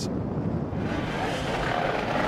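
A steady buzz of several small racing minibike engines running together in the pit lane, their pitch wavering slightly, growing fuller about a second in.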